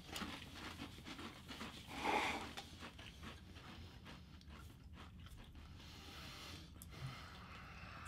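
Faint chewing and crunching of Pringles potato crisps by several people, small crackly crunches scattered throughout, with a louder brief mouth noise about two seconds in.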